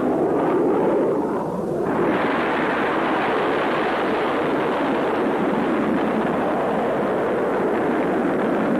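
A loud, steady jet-aircraft roar, a sound effect on an old film soundtrack with a dull, muffled top end. It grows fuller and brighter about two seconds in and then holds steady.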